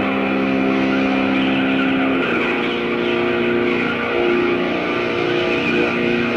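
Live rock band playing an instrumental passage: long sustained notes held over a dense band sound, moving to new pitches about two seconds in.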